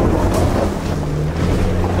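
Loud rushing and rumbling inside a car's cabin as it is driven over rough ground, with a low steady engine drone under the road noise.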